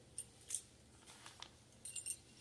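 A few faint, light clicks of small plastic model-kit parts being handled and set down.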